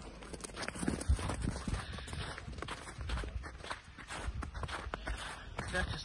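Footsteps on snow: an irregular series of short, soft crunching steps.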